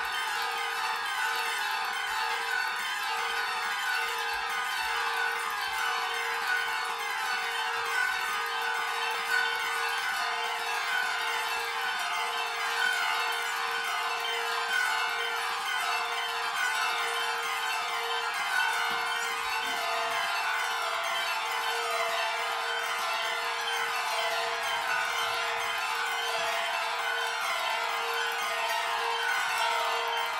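Four acoustic guitars played with bows in a contemporary quartet piece: a dense, shimmering, chime-like wash of many overlapping high tones that keep falling in pitch, over one steady held tone.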